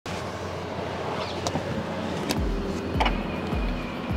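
A car door being opened, with a few sharp clicks from the latch and handle over street background noise. Background music with a steady beat comes in about halfway through.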